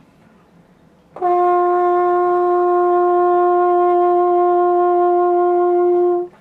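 French horn holding one sustained note, starting about a second in and held for about five seconds, played with right-hand vibrato: the hand in the bell moves quickly to shift the intonation.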